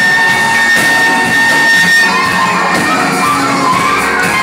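Live band music played loud in a large hall, with a long held high note for about the first two seconds, then a wavering melody line over the band.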